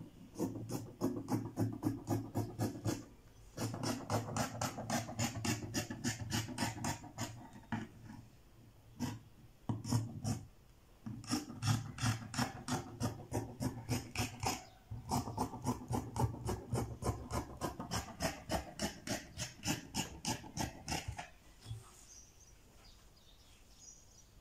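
Scissors cutting through two layers of folded fabric on a wooden table, a fast run of snips about four a second, in several runs with short pauses, then stopping about 21 seconds in.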